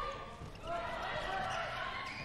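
Live court sound of a handball match: a handball bouncing on the court floor, with players' voices calling out faintly.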